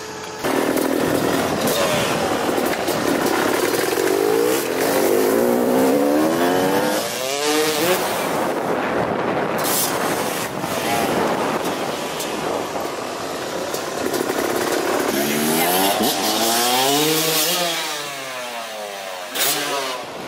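Motocross dirt bike engine revving hard on freestyle jumps, its pitch swooping up and down in quick throttle blips. The swoops come in two runs, one about four to eight seconds in and one about fifteen to nineteen seconds in.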